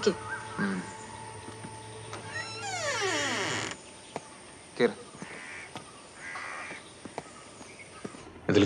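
A crow cawing twice, two short harsh calls about a second apart, in the second half. Before the calls, a low steady tone and a long falling glide of the background score cut off suddenly just before halfway.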